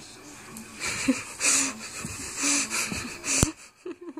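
Dogo Argentino puppy squirming on his back, making a run of breathy huffs with low grunts, about four of them a second or so apart, with a sharp tap near the end.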